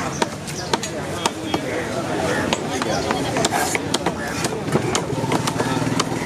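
Cleaver chopping tuna on a wooden log chopping block: sharp, repeated strikes, about two a second at first and further apart later, over the chatter of a busy fish market.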